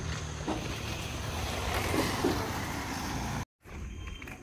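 Steady outdoor background noise with a low rumble and a couple of faint knocks; it cuts off suddenly near the end.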